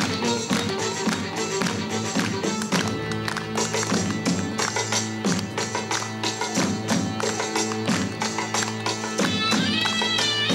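Live band playing an instrumental passage with a steady percussive beat over sustained bass notes, no singing; a higher melodic line comes in near the end.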